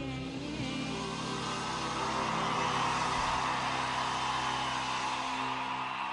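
A live band's final chord rings out as the singer's last held note ends about half a second in. A large crowd's cheering swells up from about a second and a half in and stays loud.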